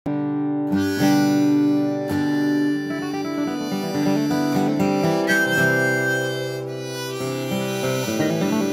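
Harmonica in a neck rack playing long held notes and chords over a Martin D-16 acoustic guitar being strummed. There are strong strums about one and two seconds in.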